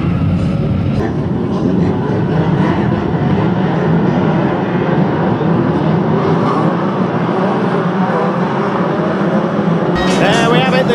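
Many banger racing cars' engines running together as a big pack drives round, a steady dense din of overlapping engine notes.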